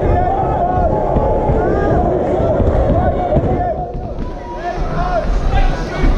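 Boxing crowd shouting and cheering, several voices yelling at once over a dense din.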